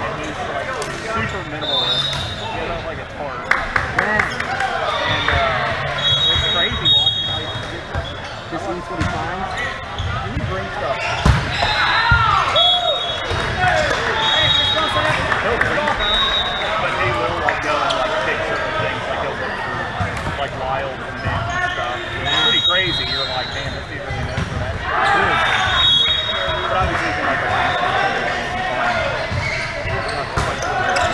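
Indoor volleyball gym sound: players calling out and chatting, with volleyball hits and bounces on the court and short high-pitched squeaks, all echoing in a large hall.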